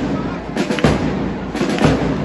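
Marching drums beating a cadence for a marching drill: clusters of sharp drum strikes about once a second.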